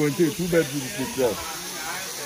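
Steady hiss of a thin waterfall spraying down onto rocks and a pool. A person laughs over it during the first second and a half.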